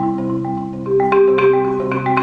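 Solo marimba played with mallets: low notes ring on under a quicker line of higher struck notes, with a louder group of strikes about a second in.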